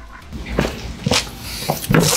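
Scattered light knocks and scuffs of footsteps on a concrete floor and hands taking hold of a large cardboard box, with the loudest knock near the end.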